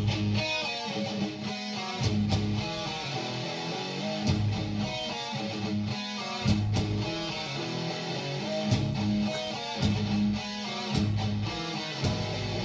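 A band's studio recording played back over speakers: distorted electric guitars, bass and drums come in together right at the start and carry on in a steady driving rhythm, with no singing.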